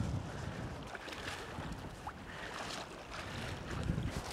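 Wind on the microphone and small waves lapping in shallow water, a steady even wash.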